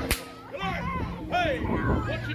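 A single sharp crack just after the start, then a crowd of children's high, excited voices and squeals.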